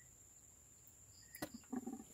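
Near silence with a faint steady high-pitched whine, broken by a single sharp click about a second and a half in and a few faint short sounds after it.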